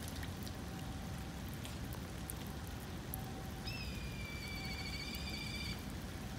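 A raccoon dog's single high, steady whining call, about two seconds long, beginning a little past halfway. It sits over a steady hiss with scattered drip-like ticks, like light rain.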